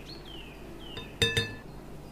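Two quick clinks of a plastic measuring spoon against a glass mixing bowl, a little past the middle, each followed by a brief glassy ring.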